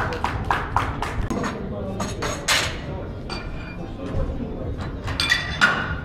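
Clapping for a good lift, fading out in the first second or so. Then a few metal clanks with a short ring, as barbell plates are knocked while the bar is loaded up to 187.5 kg, over low crowd chatter.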